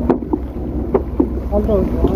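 A fishing boat's engine running with a steady low hum, with a few sharp knocks on board.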